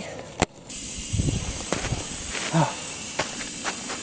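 Coleman camp stove burner hissing steadily under a camp oven, the hiss starting abruptly after a click about half a second in, with a few faint knocks.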